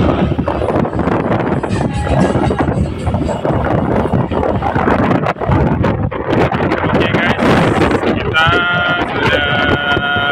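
Heavy wind buffeting on the microphone with road rumble, from riding along a road on an open vehicle. A voice comes in near the end.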